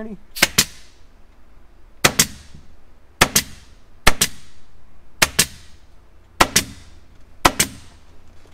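Pneumatic upholstery staple gun firing staples through the headliner fabric into the tack strip. There are seven shots, roughly a second apart, and each one is a sharp double crack.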